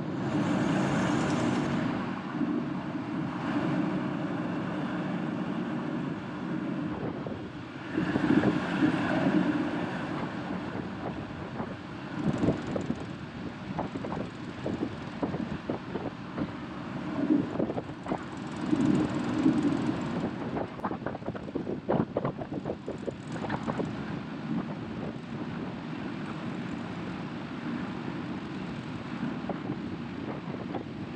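Caterpillar 535D skidder's diesel engine running as the machine drives along pavement, its level rising and falling, with wind on the microphone. Irregular knocks and rattles come through the middle stretch.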